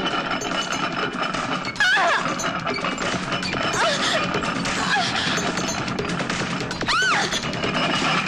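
Dramatic film background score. Over it come several short cries that rise and fall in pitch, the loudest near the end.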